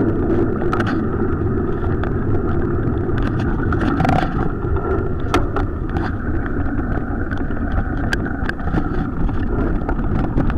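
Bicycle ridden over a gravel forest track: a steady rumble from the tyres and wind on the microphone, with scattered sharp clicks and rattles from the bike.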